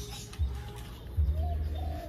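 A bird calling over a low, steady hum.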